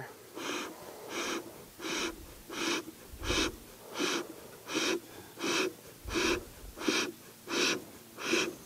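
Bee smoker's bellows squeezed over and over, each squeeze a short breathy puff of air pushed through the smoldering fuel. There are about eleven evenly spaced puffs, roughly three every two seconds. The pumping fans the newly lit fuel up to flame.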